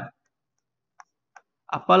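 Two faint, short clicks about half a second apart: a pen tip tapping on the interactive display board during writing.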